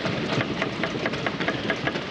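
Members of parliament thumping their desks in applause: a dense, irregular patter of many knocks at a steady level.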